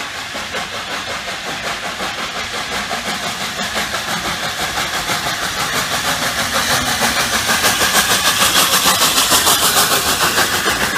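LNER A4 Pacific steam locomotive Bittern pulling away, its three-cylinder exhaust beating rhythmically and getting steadily louder as it comes up to and passes close by.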